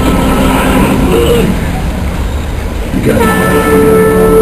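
Film soundtrack: loud dramatic background music. A sustained horn-like tone enters about three seconds in and holds.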